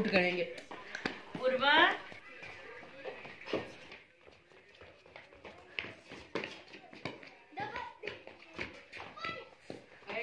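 Players' voices shouting: a loud call at the very start and another about a second and a half in, rising in pitch. After that come quieter scattered voices and a few light knocks.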